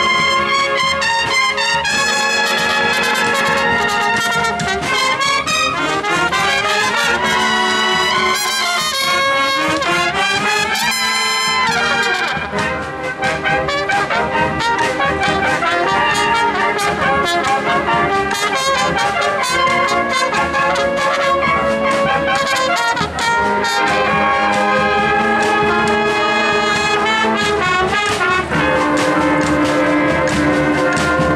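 Banda de cornetas y tambores playing a march: massed valved bugles carrying the melody over a steady drum beat, with fast climbing runs in the brass in the first half.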